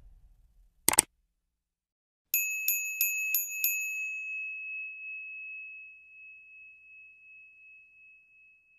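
Outro sound effect: a quick double click, then a small bell struck five times in quick succession and left to ring out, fading away.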